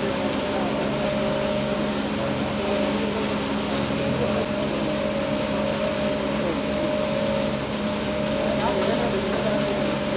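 Engine of a self-loading concrete mixer running with a steady hum while it discharges concrete down its chute, with people's voices in the background.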